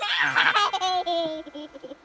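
A high-pitched, childlike laugh that starts loud and tails off in a long, drawn-out, slightly falling note.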